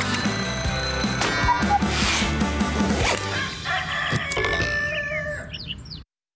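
Theme music of a TV morning-show intro, with an alarm-clock bell ringing rapidly in about the first second.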